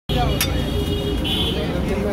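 Busy street ambience: a steady low traffic rumble with people talking in the background, and one sharp click near the start.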